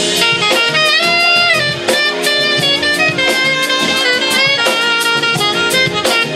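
Saxophone playing a melodic line with held and sliding notes over a live jazz-funk band, with keyboards and a drum kit keeping a steady beat.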